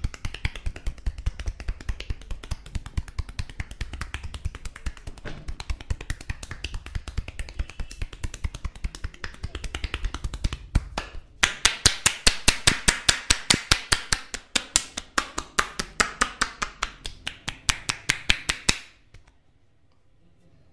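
Massage percussion (tapotement): hands striking a bare back in a rapid, even train of taps. About eleven seconds in the strikes turn louder and sharper, like clapping slaps, and they stop about a second before the end.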